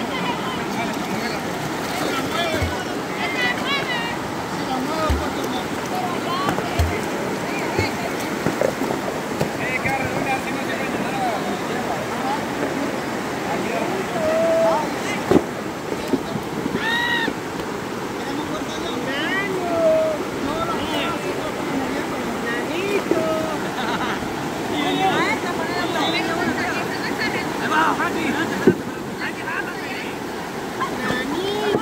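Shallow river water rushing over rocks in a steady wash, with people's voices calling out now and then over it. A sharp knock sounds about halfway through.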